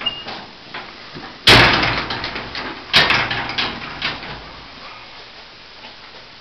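The steel door of a 1967 Ford Econoline van being unlatched and opened: a loud clunk about a second and a half in, then a second, sharper clunk with a few rattling clicks about three seconds in.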